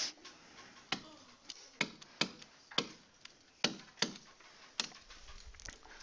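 A stylus tip tapping and clicking against a writing surface as handwritten strokes are made, about ten sharp, irregular clicks.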